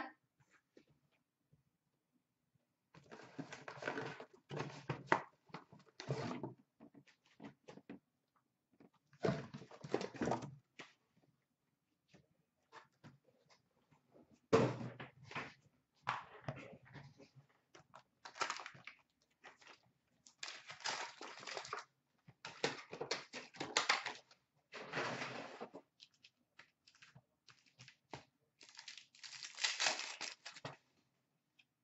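Hockey card boxes and pack wrappers being handled and torn open: irregular clusters of rustling, crinkling and tearing with short silent pauses between them.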